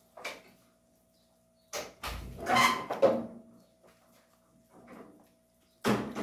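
A bite into a Japanese melon eaten with its skin on, followed by chewing, loudest about two seconds in, with a few small handling knocks around it.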